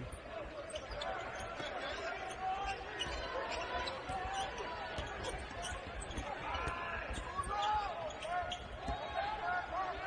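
Basketball dribbled on a hardwood court during live play, as repeated low bounces, with arena crowd noise and voices in the background.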